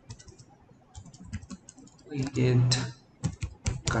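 Typing on a computer keyboard: keys clicking in short, irregular runs as a sentence is typed.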